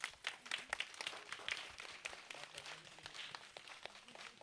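A group of young children and adults clapping their hands: a dense, uneven patter of many claps, fairly faint.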